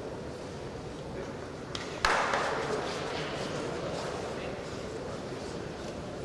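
Background murmur of spectators in a large sports hall, with a sudden loud thud about two seconds in that rings on and fades slowly in the hall's echo.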